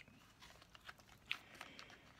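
Faint handling noise of a leather camera case being worked off a folding camera: soft rubbing with a few light clicks near the middle.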